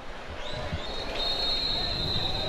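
Referee's whistle blown for half-time: a high whistle that comes in about half a second in and is then held as one long steady blast. Stadium crowd noise is underneath.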